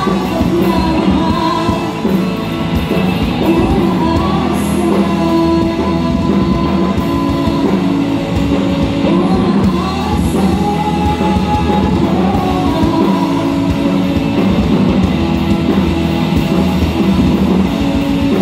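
Live rock band playing at full volume: a woman singing over electric guitars, bass guitar and a drum kit.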